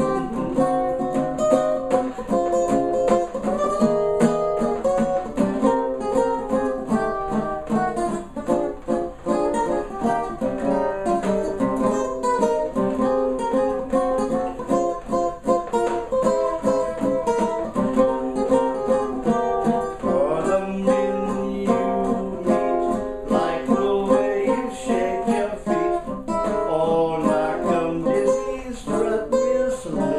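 Custom OME tenor banjo with a 12-inch head strummed in 1920s jazz style, with fast, dense chord strokes that run on without a break.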